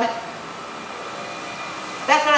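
Steady background noise with no distinct events, heard in a pause between the demonstrator's amplified speech.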